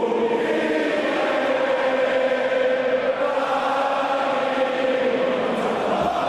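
A chorus of voices chanting long held notes together, as intro music.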